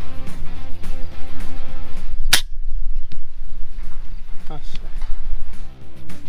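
A single sharp shot from a PCP air rifle about two seconds in, over background music with a steady bass beat.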